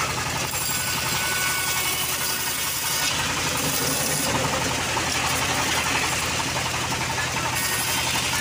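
Homemade bandsaw ripping a teak plank lengthwise: a steady machine hum under the continuous hiss of the blade cutting through the wood.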